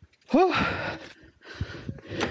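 A man's short exclamation "oh", its pitch rising and then falling, followed by a breathy rush of noise like a gasp or exhale.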